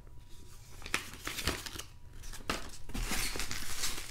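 Plastic bubble wrap and padded mailers crinkling and rustling as they are handled, with scattered small clicks; the rustling grows louder over the last second or so.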